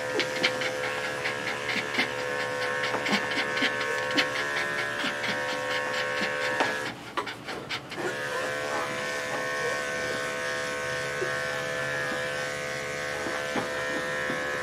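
Electric dog-grooming clipper running steadily as it shaves a schnauzer's coat down in a rough first pass; the motor sound drops out for about a second some seven seconds in, then runs again. A dog panting in quick short breaths alongside.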